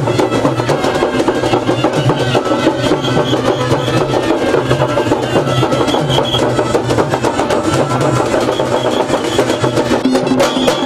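Procession drum band playing a fast, continuous beat of dense drum strokes, with a held melody line over the drumming.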